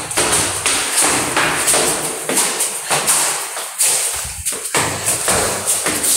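Slide sandals slapping on stone stair steps as someone climbs briskly, about two to three footfalls a second.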